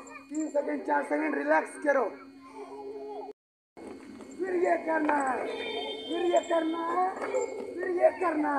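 Many children's voices chattering and calling out together over a steady low hum, cut off by a brief silence a little after three seconds in.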